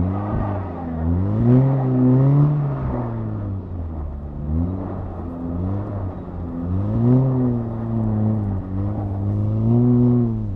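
2018 VW Golf R mk7.5's turbocharged four-cylinder engine, fitted with a cold air intake and a resonator delete, heard from inside the cabin as it is driven hard, the revs climbing and dropping about four times.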